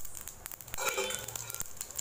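Mustard seeds spluttering in hot oil in an aluminium pan: scattered, irregular sharp pops over a faint sizzle, as the seeds start to burst for the tempering.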